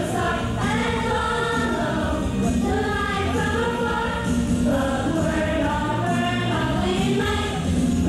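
Children's choir singing together over musical accompaniment, with steady sung phrases and no pause.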